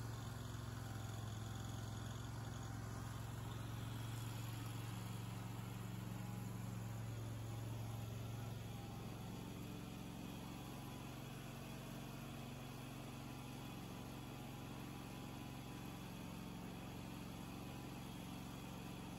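Wood-Mizer band sawmill running steadily as its dull blade works slowly through a wide red oak cant, a low machine hum that eases slightly about halfway through.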